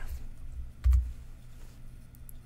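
A single computer click with a dull low thump about a second in, the press that advances a presentation slide.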